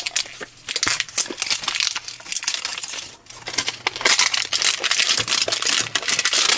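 Crinkly printed wrapper of an LOL Surprise Hairgoals doll capsule being peeled and crumpled by hand, an irregular run of crackling crinkles that grows loudest about four seconds in.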